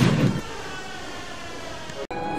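The tail of a loud, bass-heavy gunshot sound effect dies away in the first half second, leaving a steady low hum with faint high tones.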